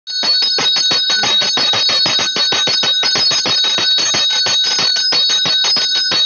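Small brass hand bell rung rapidly and continuously during an aarti, its clapper striking about eight to ten times a second over a sustained high ring.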